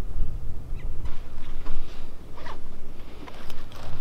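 Footsteps crunching and scuffing on dry desert ground and brush, with clothing rustling, as scattered short scratchy sounds over a low rumble.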